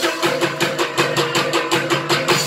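Javanese Soreng dance music: a fast, even beat of drums and percussion, about six or seven strokes a second, with a repeating pitched metallic note.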